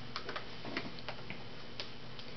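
Several small, sharp plastic clicks and ticks at irregular intervals from an EOS lip balm sphere being handled in both hands and its cap closed.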